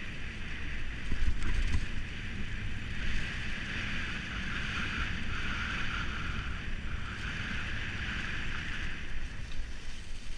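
Hardtail mountain bike rolling fast downhill over a dry-leaf-covered dirt trail: steady hiss of the tyres through the leaves over a low wind rumble on the action camera's microphone, with a few knocks from the bike going over bumps in the first two seconds.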